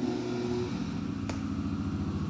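Spindle motor of a Cincinnati CNC mill running at a steady speed during a test run, a hum made of several steady tones. Its tone shifts slightly under a second in, and there is one faint tick near the middle.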